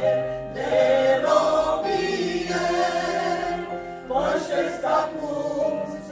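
A small mixed choir of women and men singing a Romanian Pentecostal hymn in long held phrases, with short pauses for breath near the start and about four seconds in.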